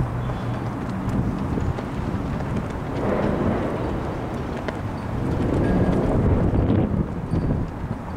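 Wind gusting over the camera microphone: a low rumbling buffet that swells about three seconds in and again around six seconds.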